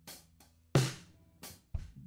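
Backing drum-kit beat playing on its own at a slow tempo: four separate hits, the loudest a little under a second in.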